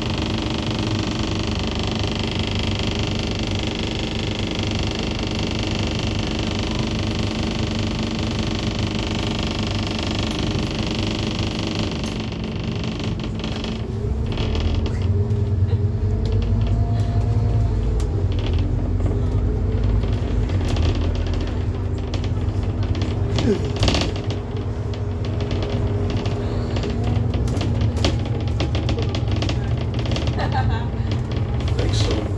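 Interior noise of a Scania N230UD ADL Enviro 400 double-decker bus on the move, with its diesel engine and drivetrain running and a steady drone. The low engine sound grows louder about halfway through, with scattered clicks and rattles after that.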